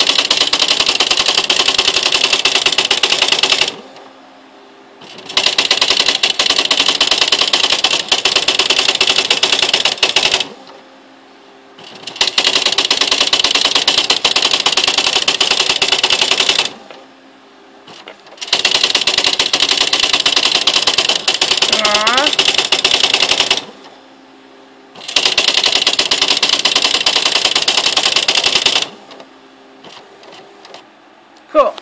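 Smith Corona SL575 electronic daisywheel typewriter printing its built-in demonstration text automatically: five runs of rapid type strikes, each four to five seconds long, with pauses of about a second and a half between them.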